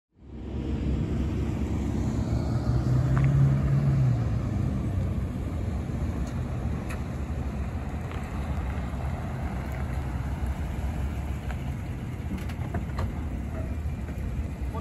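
2019 Chevrolet Silverado 1500 pickup driving slowly across a parking lot and pulling up, its engine and tyres giving a steady low rumble that is loudest about three to four seconds in.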